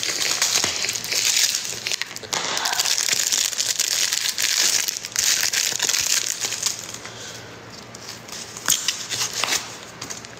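Packaging crinkling and rustling as it is handled, dense for about the first seven seconds. It then turns quieter, with a few sharp clicks near the end.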